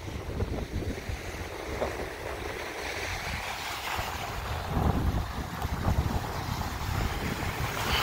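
Wind buffeting the microphone, with a low uneven rumble, over the wash of small waves breaking on a sandy shore.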